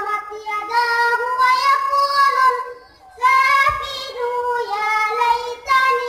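A young boy reciting the Quran in a melodic chant into a microphone, with long held notes that glide up and down in pitch. He breaks off briefly for breath about three seconds in.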